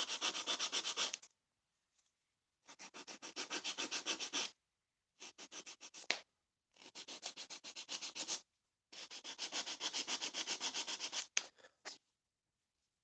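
Emery board filing a Barbie doll's plastic neck, smoothing the edges of the glued neck repair. It comes in five bouts of quick back-and-forth strokes, about five a second, with short pauses between, and there is one sharp tap near the end.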